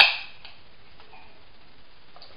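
Aluminium drink can being cracked open: one sharp crack of the tab that dies away in a fraction of a second, followed by a couple of faint ticks.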